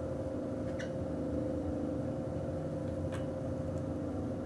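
Steady low hum with two faint clicks, one about a second in and one near the end, as the high-pressure hose coupling is unscrewed from the SCBA air cylinder valve.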